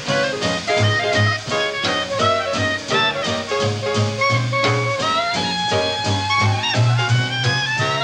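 Small traditional jazz band playing a swing tune: a clarinet lead line over guitar, drums and a walking string bass. The lead glides upward over the last few seconds.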